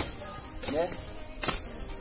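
A hoe chopping into weedy soil, two strikes about a second and a half apart, over a steady high-pitched drone.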